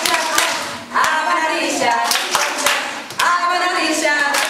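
Several people clapping along to a woman singing, the claps sharp and repeated throughout; her sung phrases come in about a second in and again near the end.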